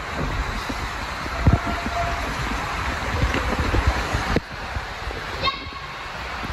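Inflatable raft riding down an enclosed water slide tube: rushing water and rumbling, with repeated low thumps as the raft bumps along the tube walls. The sound drops suddenly quieter about four and a half seconds in.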